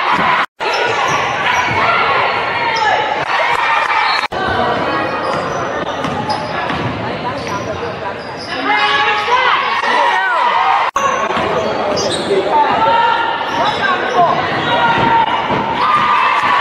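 Live sound of a basketball game in a gym: the ball bouncing on the hardwood, sneakers squeaking and players and spectators calling out, all echoing in the hall. The sound cuts out briefly three times, about half a second, four seconds and eleven seconds in.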